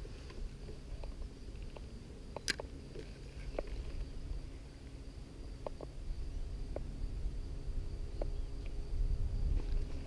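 Low wind rumble on the microphone with scattered light clicks and taps from handling a fishing rod and reel in a canoe, one sharper click about two and a half seconds in, and a faint steady high note.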